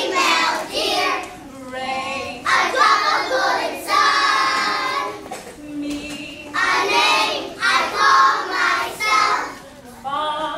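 A group of young children singing together in short phrases with brief pauses between them.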